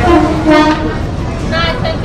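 A train horn sounds one steady, level note for just under a second over a constant rumble of noise.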